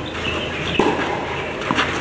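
Tennis ball being struck and bouncing during a rally on a clay court: a few short, sharp pocks about a second apart.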